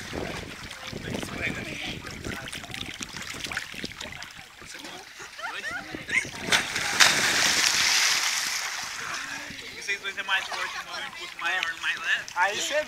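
A big splash about seven seconds in as a person is thrown off another's shoulders into shallow water, with a rush of falling water for a second or two afterward. Smaller splashing and sloshing of people moving in the water around it.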